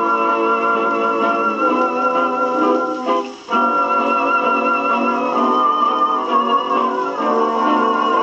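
A late-1920s jazz dance-band recording played from a 78 rpm shellac disc on a wind-up portable gramophone, heard through its acoustic soundbox with a thin tone and no deep bass. It is an instrumental passage: a melody line with a wide vibrato over the band, with a brief break about three and a half seconds in.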